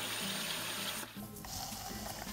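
Hissing fizz from a SodaStream sparkling water maker's bottle of freshly carbonated water, fading about a second in, over background music.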